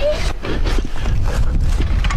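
ATV (quad) engine idling as a steady low rumble, with short knocks and rattles over it.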